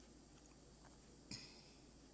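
Near silence: room tone, with one brief faint hiss a little past the middle.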